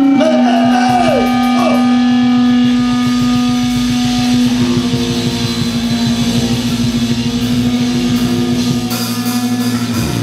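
A hardcore punk band playing live: distorted electric guitars, bass and drums over one long held note, with a sliding pitch in the first couple of seconds and the low rhythm changing near the end.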